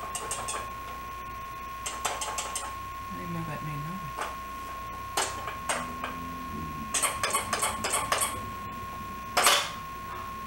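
Small toy pieces being handled and knocked together on a box: short runs of light clicks and taps, a faster run of clicking about seven seconds in, and a louder clatter near the end.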